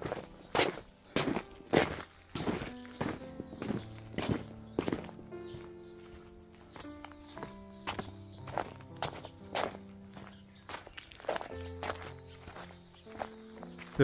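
Footsteps walking at a steady pace, about two steps a second, the first ones on plastic sheeting laid over a dirt path. Background music with soft held notes plays under them.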